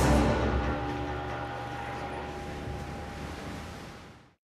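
Background music: a low, sustained drone with held tones, loudest at the start and fading out near the end.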